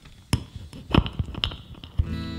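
A few irregular knocks and bumps, the loudest about a second in, ending as a strummed guitar comes in.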